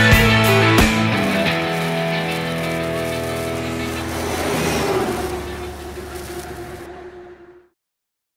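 Rock-style intro music: drum hits over guitar chords in the first second, then one long held chord that fades away and stops about seven and a half seconds in.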